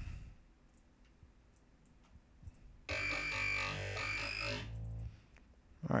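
Dubstep growl bass from a Native Instruments Massive patch: a single Digi II wavetable oscillator whose wavetable position and intensity are swept by tempo-synced LFOs, playing a short low phrase. It starts about three seconds in and lasts a little under two seconds, the bass dying away just after.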